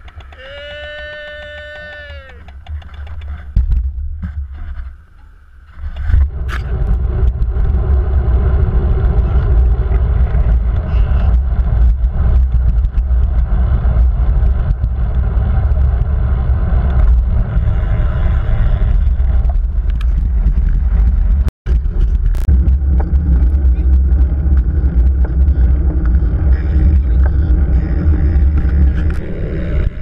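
Wind buffeting a handlebar-mounted action camera's microphone while riding a road bike: a loud, steady low rumble from about six seconds in. It cuts out for an instant about two-thirds of the way through.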